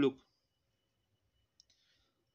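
A spoken word trails off, then near silence with a faint brief click about one and a half seconds in.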